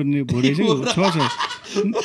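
Men's voices talking and chuckling, with laughter breaking into the speech.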